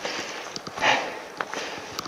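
A person's heavy breathing, about one loud breath every second and a half, the breathing of exertion after climbing down a steep slope. Between breaths, footsteps crunch on dry leaf litter and stones.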